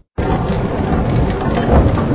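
Cartoon sound effect of a flour mill grinding wheat: a loud, rough, rumbling grind that starts abruptly a moment in and keeps on steadily.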